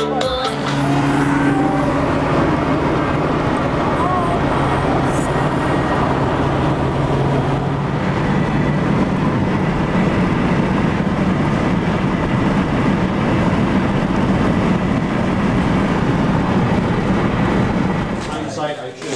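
Car driving at highway speed, heard from inside the cabin: a steady blend of engine drone and road noise.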